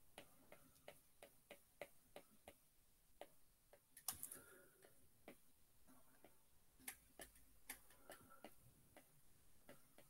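Faint, sharp clicks, a few a second and unevenly spaced, of a stylus tip tapping an iPad's glass screen as letters are written stroke by stroke.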